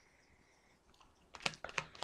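Tarot deck being shuffled by hand: a quick, irregular run of soft card clicks sets in a little past halfway, after a near-silent start.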